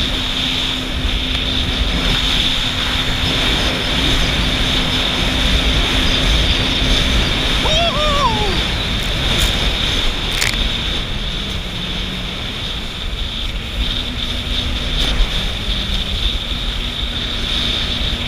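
Jet ski engine running at speed, with water and wind rushing past. The engine note drops for a couple of seconds about halfway through, then rises again.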